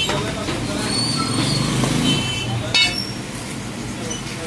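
Busy street-market background of voices and road traffic, with one sharp knock a little under three seconds in.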